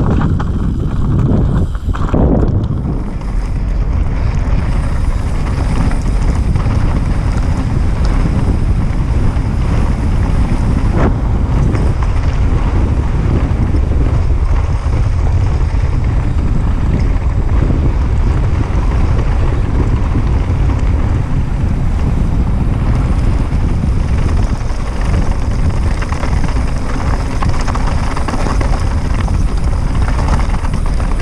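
Steady loud wind rumble on a GoPro microphone as a mountain bike descends fast over a rocky, gravelly trail, mixed with tyre noise on loose stones and bike rattle. A few sharp knocks come as the wheels hit rocks, one about two seconds in and another near the middle.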